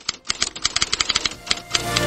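Typewriter sound effect: a rapid, irregular run of key clicks, about a dozen a second, as text types itself out on screen.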